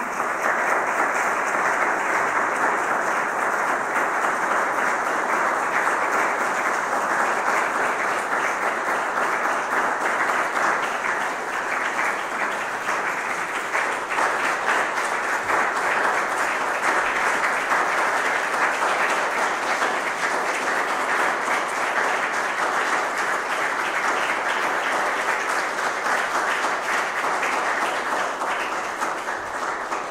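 Audience applauding, a dense, steady clapping that starts right away and holds for the whole stretch, beginning to fade near the end.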